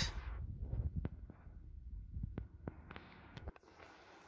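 Low rumbling with a few faint clicks; the rumble drops away about three and a half seconds in.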